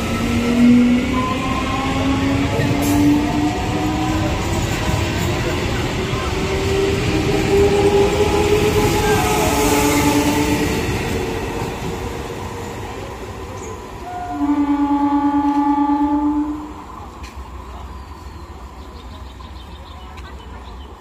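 Eastern Railway EMU local train accelerating past, its electric traction motors whining in several tones that climb steadily in pitch over the rails' rumble. About two-thirds of the way in, one steady horn blast lasts about two seconds; then the train's sound fades as it moves away.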